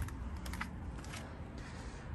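Quiet outdoor background with a low rumble and a few faint, light clicks.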